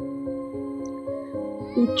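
Soft background music of sustained, held notes. Near the end a woman's voice breaks in, high and wavering.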